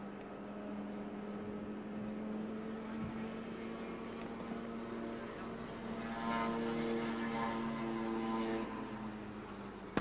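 Two Ferrari Berlinetta Boxers, a 512 BB and a 365 BB, running hard on carburettors, their flat-twelve engines giving one steady, held engine note. The note swells louder for a couple of seconds about six seconds in as the cars come closer, then fades.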